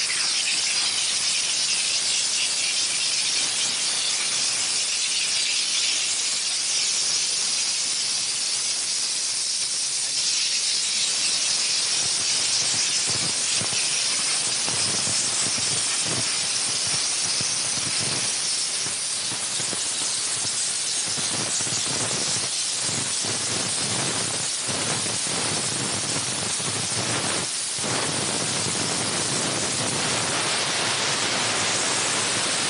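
20-bar steam car washer blowing dry steam from its hand lance onto a car's wheel and door panel: a steady, high hiss with irregular crackles from about halfway through.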